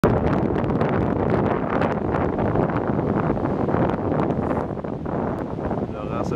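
Strong wind buffeting the camera microphone: a loud, gusty rumble with rapid crackling, easing briefly about five seconds in.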